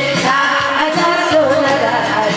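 A woman singing a Korean pumba song into a microphone, amplified through a PA, over drum-backed musical accompaniment.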